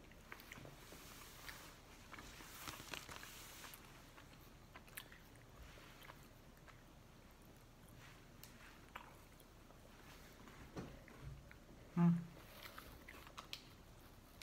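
Faint chewing and small crunches of people eating crispy cereal-and-marshmallow treat bars, with a short, louder hummed vocal sound about twelve seconds in.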